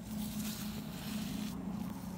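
A hand in a plastic bag scooping up loose sand from the ground: a gritty, rustling scrape for about a second and a half that then stops. A steady low hum runs underneath.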